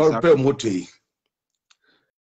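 A person speaking over a live video call, cut off about a second in by dead silence, with one faint click near the end.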